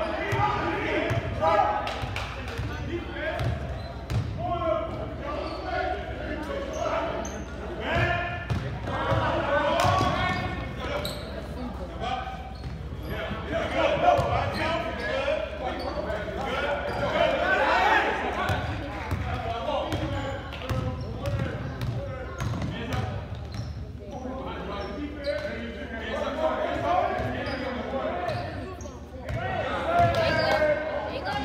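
Basketball bouncing on a hardwood gym floor during play, with voices of players and spectators through the whole stretch, echoing in a large hall.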